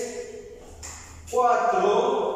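A voice singing long held notes. One note fades out in the first half second, and the next starts sharply about a second and a half in.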